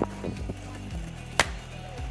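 Background music with a steady low bass line and one sharp percussive hit about one and a half seconds in.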